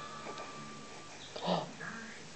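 Newborn baby making small vocal sounds: a thin, high held note through the first second, then a short louder sound about one and a half seconds in.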